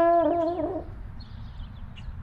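A drawn-out, wavering vocal note trails off in the first second. It gives way to low outdoor rumble with a few faint high bird chirps.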